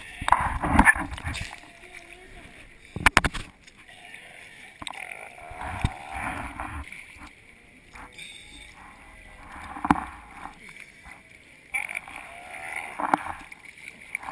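Sea water sloshing and splashing around a camera held at the surface, with sharp knocks about three seconds in.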